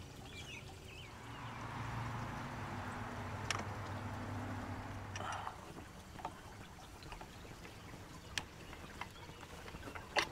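Quiet background with a faint low hum and hiss that swells and fades in the first half, and a few light metallic clicks as a bike pedal is tightened onto its crank with an open-end wrench.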